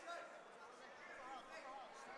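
Faint, distant voices in a large hall, people calling out and talking at a low level.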